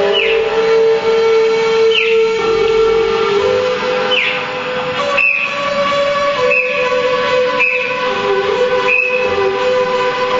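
Live electronic noise music played through guitar amplifiers: sustained droning tones that step between pitches, with short high chirps, some falling, every second or two, and a few sharp clicks in the middle.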